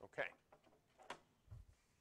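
A man says "OK", then near silence with a faint click about a second in and a soft low thump shortly after, small handling noises at the desk.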